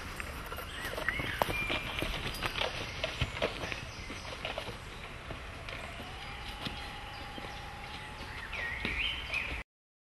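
Footsteps crunching over dry leaf litter and snapping twigs on a woodland floor, an irregular run of crackles and cracks that thin out about halfway through, with a few faint bird calls. The sound cuts off suddenly near the end.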